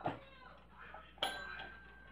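Westclox Twin-Bell alarm clock: a light click, then about a second in a single faint strike on its bell that rings on briefly. The alarm no longer works and the bells are loose, so this weak ding is all it gives.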